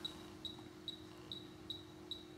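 Faint, short high-pitched beeps from a Globus Genesis 300 electrical muscle stimulator, about two a second, as its intensity is stepped up, over a faint steady hum.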